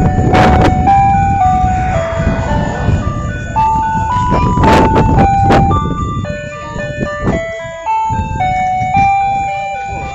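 An ice cream truck's loudspeaker plays a Christmas tune as a simple electronic chime melody, one held note at a time. A low rumble runs underneath, and there are two brief loud noises, about half a second in and near the middle.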